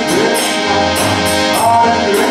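Harmonium playing sustained reed chords under a voice singing a kirtan melody, with a high percussion strike about twice a second.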